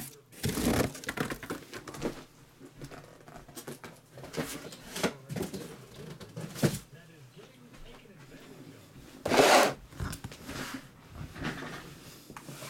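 Cardboard trading-card hobby boxes being handled, pulled from a case and set down on a table mat: scattered light scrapes and knocks, with one louder scrape or rustle about nine and a half seconds in.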